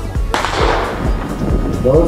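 A starting pistol fires once, about a third of a second in, with a trailing echo: the signal to start a sprint relay heat. Music with a steady low beat plays underneath.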